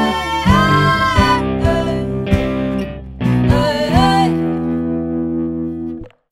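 Playback of a song mix: electric guitar chords through Logic Pro X's Amp Designer (Boutique Retro Amp into a Sunshine 4x12 cabinet) under a sung vocal line, with bass. The virtual cabinet microphone is switched from a Dynamic 421 to a Dynamic 57 partway through, to compare their tone. The music cuts off suddenly at the end.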